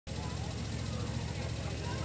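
A small engine running steadily at idle, a low even hum, with a crowd of people chattering over it.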